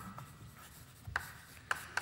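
Chalk writing on a blackboard: a few short, scratchy chalk strokes, faint, with the sharpest about a second in and again near the end.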